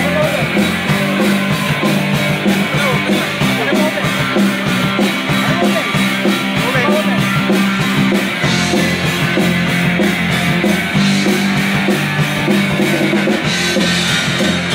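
Live punk rock band playing an instrumental passage with no singing: electric guitars, bass and a steady drum beat.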